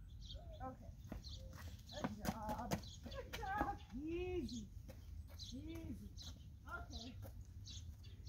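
Short vocal sounds with a rising and falling pitch between about two and six seconds in, with a few sharp clicks around two seconds in. Small birds chirp again and again in the background.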